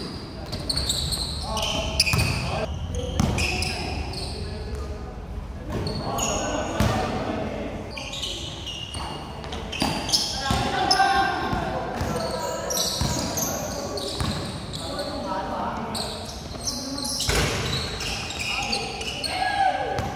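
Basketball game: the ball bouncing and striking on the court in occasional sharp thuds, with players' voices calling and chattering throughout.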